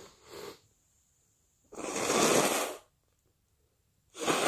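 A person with a head cold: a brief faint breath, then a loud, noisy rush of air through the nose and mouth lasting about a second.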